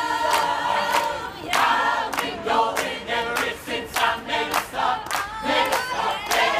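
A mixed choir singing together while clapping along in a steady rhythm, about two claps a second.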